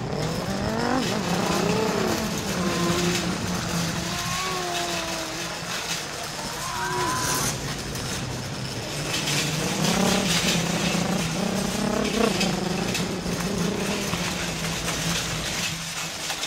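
A person's voice making race-car engine noises, long smooth pitch glides rising and falling like revving, over the steady rumble and rattle of a shopping cart rolling fast along a store floor.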